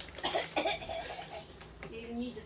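A person's voice: a short vocal sound in the first second, then quieter room sound.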